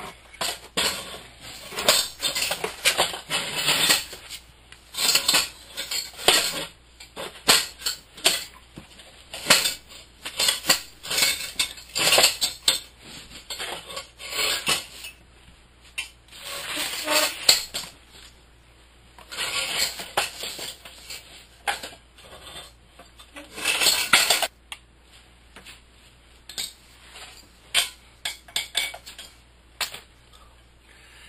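Steel frame and clamp brackets of a 36-inch Alaskan chainsaw mill clinking and clattering as they are fitted and clamped onto a chainsaw bar: irregular metal knocks and rattles, in clusters with short pauses between.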